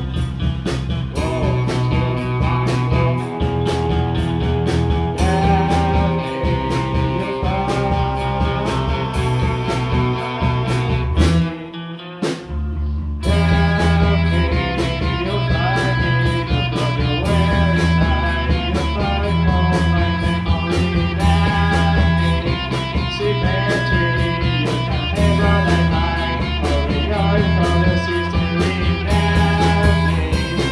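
Post-punk rock band playing: electric guitars, bass guitar and drums, with a steady beat. About twelve seconds in, the bass and drums drop out for a moment, then the whole band comes back in together.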